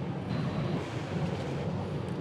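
Steady industrial background noise of a hot-dip galvanizing plant: an even hiss with a low hum underneath and no distinct knocks.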